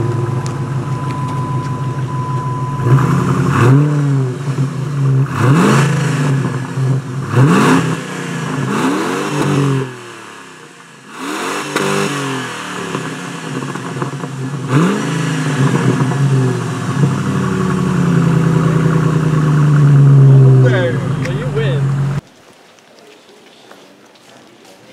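Jeep Grand Cherokee engine idling, then blipped up and down several times in quick revs, and finally held at higher revs for a few seconds before the sound cuts off suddenly near the end.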